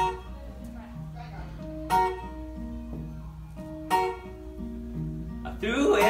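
Acoustic guitar and resonator guitar playing a slow song intro, a loud strummed chord about every two seconds over a stepping bass line. A man's singing voice comes in near the end.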